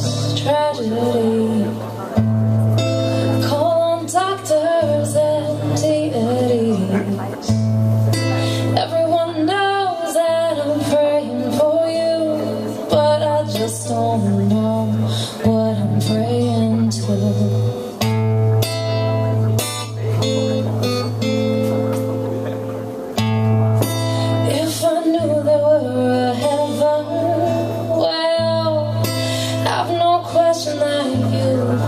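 A woman singing with her own strummed acoustic guitar in a live solo performance, heard through a club PA.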